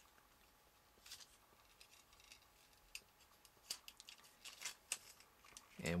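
Light clicks and ticks of plastic toy parts being moved and snapped into place by hand as the Green Raker transforming robot toy is put into robot mode: a few faint, separate clicks, coming closer together toward the end.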